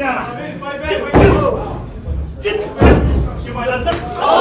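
Two heavy thuds of impacts in a pro wrestling ring, about a second and a half apart, the loudest sounds here, with voices shouting around them.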